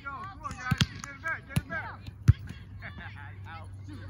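A volleyball struck by hands and forearms during a rally: several sharp smacks, the loudest a little over two seconds in, with players' voices calling.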